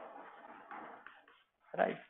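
Speech only: a lecturer's voice, low and indistinct at first, then a short, louder "right" near the end.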